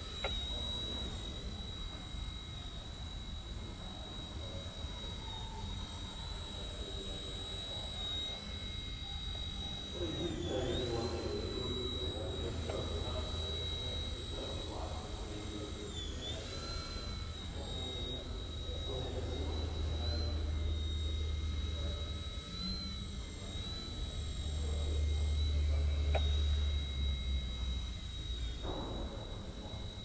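Eachine E129 micro RC helicopter's small electric motor and rotor whining at a steady high pitch, with the pitch dipping briefly twice, about ten and sixteen seconds in. A low rumble under it swells twice in the second half.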